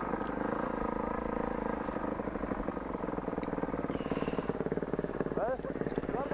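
Enduro motorcycle engine running steadily at low revs as the bike moves slowly along a dirt trail. Near the end a person's voice calls out a few short times.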